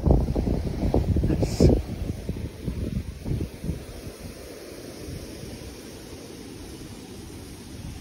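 Wind buffeting the microphone of a camera moving with a snowboarder riding powder: a rough, low rush that is strongest in the first two seconds, then settles to a steadier, quieter level.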